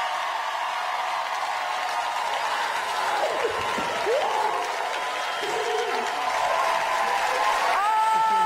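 A studio audience applauding and cheering at the end of a dance, with a few short shouts about three to four seconds in and a steady tone held underneath. Just before the end, a rising tone leads into steady musical notes.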